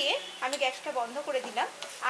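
A spatula stirring a thick mixture of bottle gourd and moong dal in a non-stick pan, with a few sharp knocks of the spatula against the pan.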